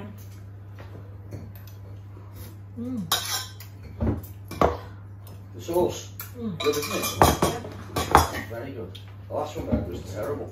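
Metal spoon and utensils clinking against a ceramic sauce bowl and knocking on a wooden chopping board: a scattered series of sharp clinks over a steady low hum.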